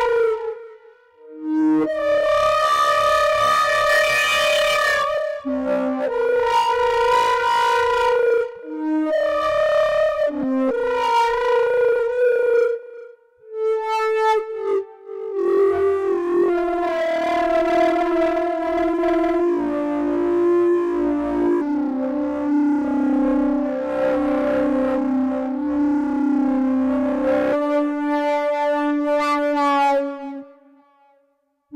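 Electronic wind controller played through a synthesizer in duophonic mode, sounding a melody two notes at a time (double stops), with notes held over by a sustain pedal. The phrases break off briefly a few times, and in the second half a steady lower note is held under the moving upper line.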